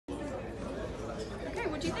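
Background chatter: several people talking at once as a low murmur. A voice starts asking a question right at the end.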